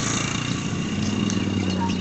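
A motorcycle engine idling steadily, with a slight change in pitch about half a second in.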